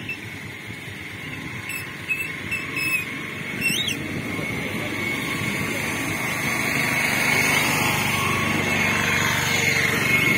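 Road traffic: a motor vehicle's engine grows steadily louder over the second half, over a constant low rumble. A few short high chirps come in the first four seconds.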